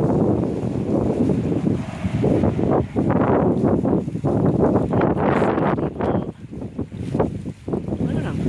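Wind buffeting the microphone: a loud, rumbling rush that rises and falls in gusts, easing off a little between about six and seven and a half seconds in.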